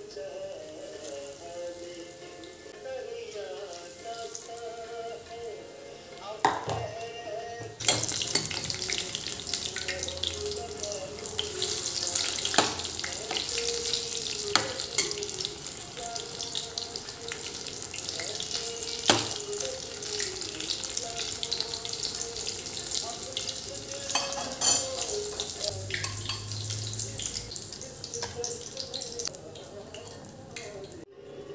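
Battered fritters deep-frying in hot oil in a kadai. The sizzle is faint at first, turns suddenly loud about eight seconds in and runs on, with a few sharp metal clinks of a slotted spoon against the pan. Soft background music plays throughout.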